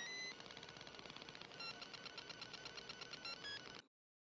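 Faint electronic music with bright tones and rapid repeated staccato notes that quicken about halfway through, cutting off abruptly just before the end.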